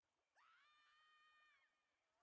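Near silence, with one faint high-pitched call that rises, holds one pitch for about a second, and fades.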